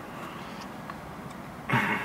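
Steady low background noise inside a parked car's cabin, with a brief breathy vocal sound near the end.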